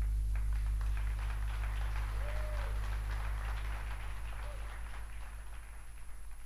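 A low sustained note rings out and fades while scattered applause and voices break out at the close of a jazz performance.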